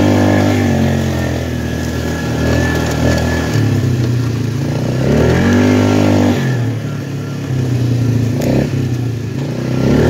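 Polaris Magnum ATV engine under way, revving up and easing off several times as the quad rides over rough ground.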